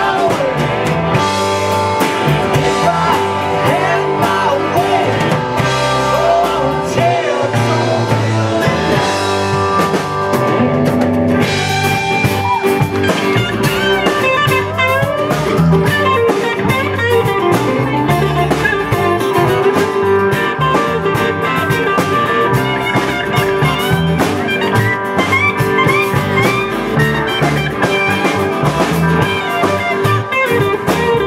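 Live rock band playing with guitars, bass and drums. A man sings over the band at first; from about a third of the way in, electric guitar lead lines with bent notes take over.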